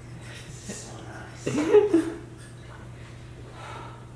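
A man's short, loud vocal noise about one and a half seconds in, its pitch rising and then falling, over a steady low hum in the room.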